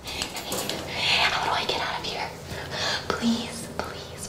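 A person whispering a few breathy phrases.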